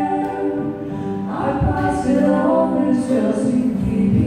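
Two women singing together live, holding long notes over their own ukulele accompaniment, with a change of notes about a second and a half in.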